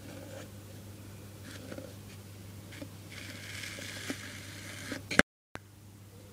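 Light rustling and scraping from handling a clear plastic food container, with a few faint clicks over a steady low hum. About five seconds in comes a sharp click, and the sound cuts out for a moment.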